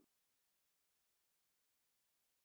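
Silence: the soundtrack is empty.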